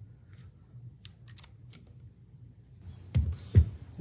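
Faint small clicks of a screwdriver turning in a hair clipper's blade screws as they are snugged down, then two louder knocks a little after three seconds in as the tools are handled on the station.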